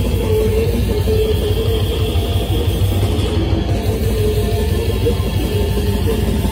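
Death metal band playing live: distorted electric guitars, bass guitar and drum kit, loud and continuous.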